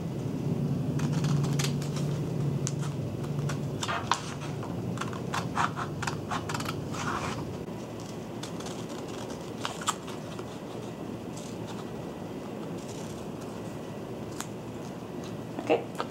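Scissors snipping through heavy glossy paper in short, irregular cuts, busiest in the first half and then sparse.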